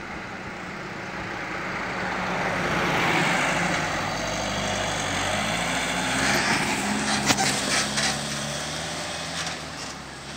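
Fiat light fire-rescue van driving past with no siren: its engine and tyre noise swell as it approaches, pass close about six seconds in, then fade. A few sharp clicks come just after it passes.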